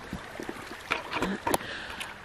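Small woodland creek babbling steadily over stones and logs, with a few brief clicks or knocks about a second in.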